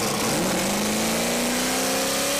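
Car engine accelerating, its note rising slowly and steadily under a strong hiss.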